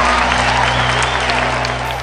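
A crowd applauding and cheering, laid over background music with held low notes.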